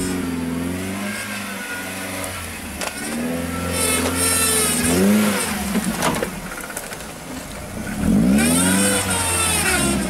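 A lifted Suzuki Jimny's engine revving up and down in repeated surges as the truck crawls through mud and onto a side-slope. The hardest revs come about four seconds in and again near the end, each with a high hiss.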